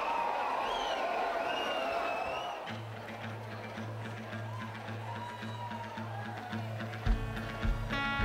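Live country band starting a song over crowd noise: high sliding notes first, then a held low bass note with a pulsing accompaniment about three seconds in, and drum hits joining near the end.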